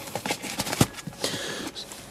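Handling noise: rustling and a string of light taps and knocks as a car's service-book wallet is handled and put down on a leather seat, with one sharper knock a little under a second in.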